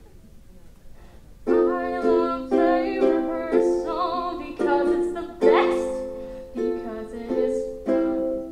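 Ukulele strumming chords in a steady rhythm, starting about a second and a half in after a short quiet.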